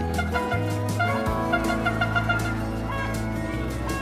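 Background music with a pitched melody over sustained bass notes and a steady beat.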